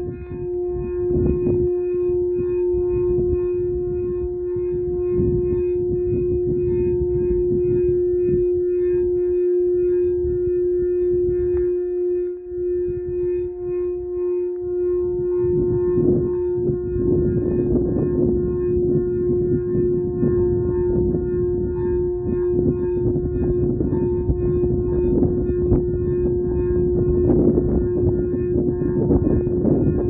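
Quartz crystal singing bowl played with a mallet around the rim, holding one steady tone with fainter higher overtones. Under it is a low rumbling noise that grows heavier about halfway through.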